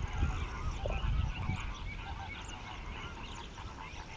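A dense chorus of many short waterbird calls overlapping throughout, over a low rumble that is strongest in the first second and a half.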